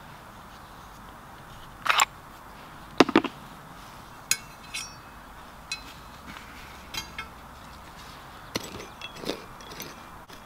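Small hand digging tools picking and scraping at soil, with scattered short clicks and scuffs: louder ones about two and three seconds in, and a few more near the end.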